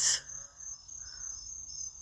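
A steady high-pitched tone sits in the background with a faint low hum beneath it.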